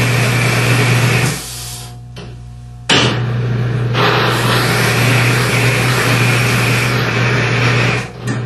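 Cross-axis lubricant test machine: the electric drive motor hums under a loud, harsh grinding of the test bearing loaded by the torque wrench. This is metal-on-metal friction as the penetrating lubricant fails. The grinding drops away for about a second and a half, then cuts back in abruptly.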